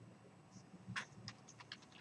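Faint typing on a computer keyboard: after about a second, a quick run of several keystrokes.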